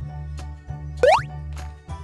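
Cheerful children's background music with a steady bass line and light percussion ticks. About a second in, a short cartoon sound effect sweeps quickly upward in pitch, the loudest moment.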